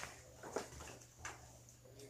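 Quiet room with a low steady hum and a few faint clicks and rustles from a plastic toy blaster being handled.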